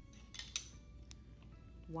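Plastic measuring spoons clattering as they are picked up, a few light clicks about half a second in and another near the one-second mark, over faint background music.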